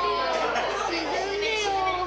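Children's voices talking and chattering over one another.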